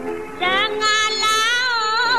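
A woman singing a Malay song with accompaniment: about half a second in, her voice slides up into a high note and holds it, the pitch wavering and bending.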